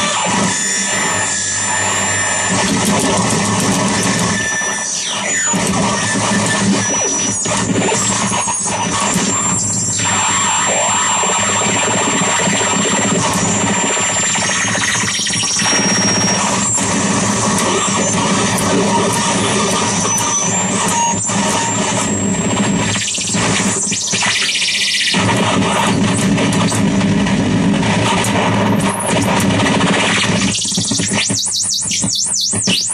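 Harsh noise from a contact-miked metal plate fed through a chain of fuzz and distortion pedals, delay and a filterbank: a dense, loud wall of distorted noise. Thin high squeals ride on top, each held for a second or two and jumping between pitches.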